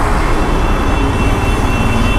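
Royal Enfield Himalayan 450's single-cylinder engine running at road speed in traffic, under a steady rush of road and wind noise on the microphone.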